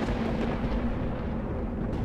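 A low, steady rumble with one held low tone running through it: a dark, thunder-like drone under a title card.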